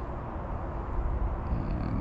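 Steady low rumble of outdoor background noise, with a faint high chirp about one and a half seconds in.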